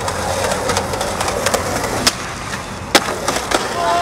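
Skateboard wheels rolling on pavement, broken by several sharp clacks of the board striking the ground, the loudest about three seconds in.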